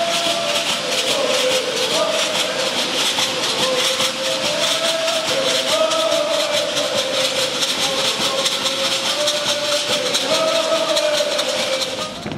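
Muscogee Creek stomp dance: turtle-shell leg rattles worn by the women dancers shake in a fast, steady rhythm. Voices chant the dance song over them in held, repeated phrases.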